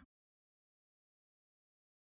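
Digital silence: no sound at all.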